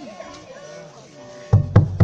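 A large drum in a traditional dance procession, struck three times in quick succession near the end, over a faint melody and voices.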